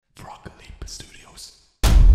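Quiet whispering with a few small clicks. Near the end comes a sudden deep booming hit that keeps rumbling, the sound effect opening the end-card logo.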